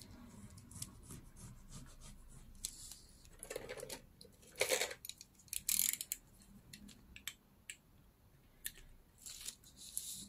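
Double-sided tape being pulled off, cut and pressed onto a strip of paper and acetate. Three short bursts of noise come between about three and six seconds in, followed by a few light clicks of handling.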